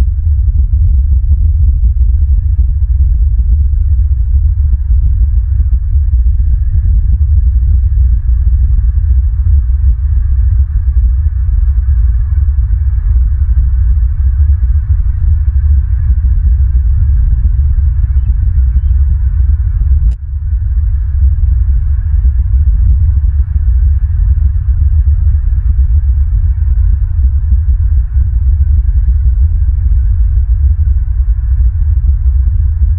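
Wind buffeting an outdoor nest camera's microphone: a loud, steady low rumble that flutters unevenly, with a brief dip and a click about twenty seconds in.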